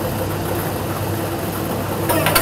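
Lottery draw machine running with a steady hum and hiss as it mixes the numbered balls.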